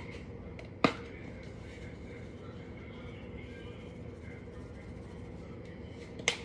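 Low, steady room noise with a single sharp click about a second in.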